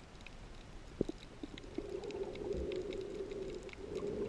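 Muffled underwater sound picked up by a camera held below the surface: a low rushing noise that fades, then swells again for the last couple of seconds, with a sharp knock about a second in and faint scattered clicks throughout.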